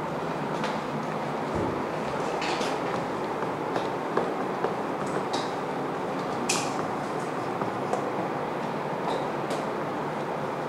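Dry-erase marker scratching and squeaking in short strokes on a whiteboard as words are written, over steady background room noise.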